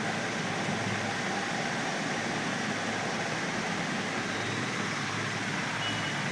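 Steady background noise with no distinct events: room tone.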